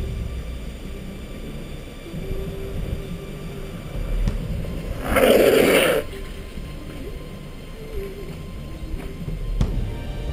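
Low driving rumble under background music, with one loud scraping hiss lasting about a second, five seconds in: longboard wheels sliding sideways across asphalt.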